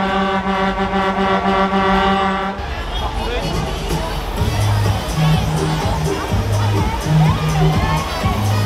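Loud funfair music with a heavy bass beat, over crowd chatter. For the first two and a half seconds a held, buzzing electronic tone sounds over it, then stops.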